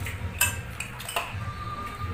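A metal spoon clinking and scraping against ceramic plates a few times, the sharpest clink about half a second in, with a brief ringing tone near the end.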